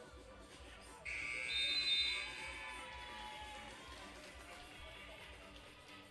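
Shot-clock buzzer sounding about a second in, a high electronic tone held for about a second before fading, as the shot clock runs out. Faint background music runs underneath.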